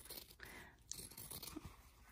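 Faint, scattered snips and scrapes of fabric shears cutting through layered fabric, trimming the seam allowance around a curved seam.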